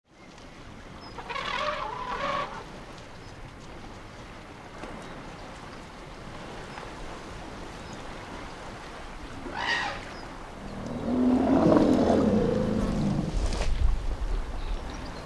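Elephants calling: short, high trumpets at about 2 s and near 10 s, then a long, louder and lower roar from about 11 s to 13 s, and another trumpet at the end.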